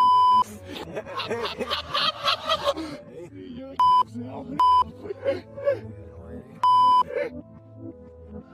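Four short censor bleeps, a loud steady beep at one pitch, covering words in speech: one at the very start, two in quick succession about four seconds in, and a slightly longer one about seven seconds in.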